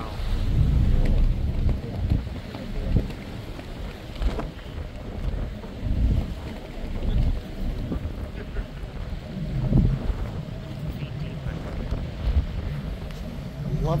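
Wind buffeting the microphone on a moving tour boat, coming in uneven low gusts.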